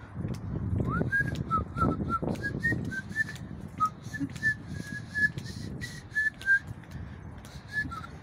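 A person whistling a tune: a string of short, clear notes that hop up and down in pitch, beginning with a quick upward slide about a second in.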